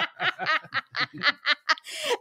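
People laughing: a run of quick chuckles, about six a second.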